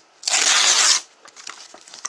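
Printed paper cover insert of a DVD case ripped in one quick tear, lasting under a second and starting about a quarter second in.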